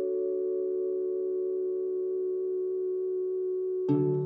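Intro music: a chord of soft, bell-like tones held steady. A new passage of plucked-string music begins just before the end.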